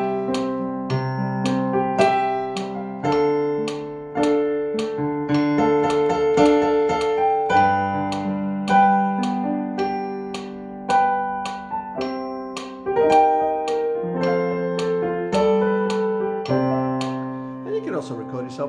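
Roland FP-30X digital piano playing through its built-in speakers: chords struck about once a second, each left to ring over shifting bass notes.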